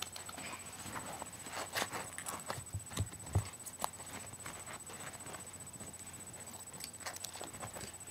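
Faint clicks and taps of plastic toy figures being handled, with a few soft knocks about three seconds in, then mostly quiet handling noise.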